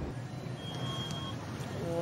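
Street ambience: a steady background hum of city traffic and noise. A faint, short high beep comes about a second in.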